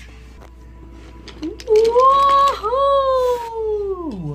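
A person's long, high-pitched wailing cry in two held notes, the second sliding down in pitch at the end, voicing the toy trains' crash. It is preceded by a few faint clicks.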